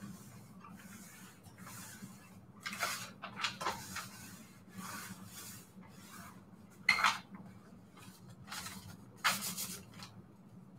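Steam iron sliding and rubbing over a sheet of coffee-dyed paper on a cloth-covered surface, with scraping and rustling as the stiff paper is pressed flat and handled. Sharper paper rustles come about seven seconds in and again near the end as the sheet is lifted away.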